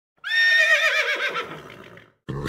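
A horse whinnying: one call that starts high and steady, then wavers and falls away, fading out over about a second and a half.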